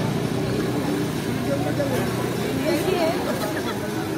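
Busy street ambience: steady traffic noise and the chatter of a crowd, with faint background voices.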